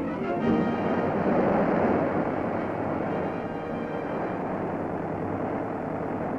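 Steady roar of a large four-blade aircraft propeller spinning on a wind-tunnel test rig, mixed with orchestral newsreel music with brass.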